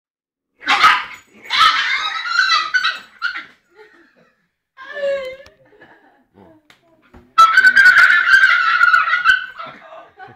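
Chinese crested dog barking in several loud bursts, the longest starting a little past seven seconds in and running over two seconds.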